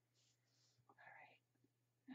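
Near silence, with a faint whispered word about a second in.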